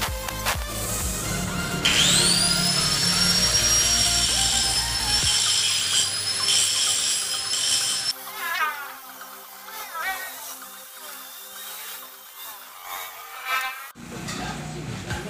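Handheld angle grinder cutting through the steel spokes of a motorcycle wheel: a high whine that rises as it spins up about two seconds in, holds steady, and cuts off suddenly about eight seconds in. Background music plays under it and runs on alone afterwards.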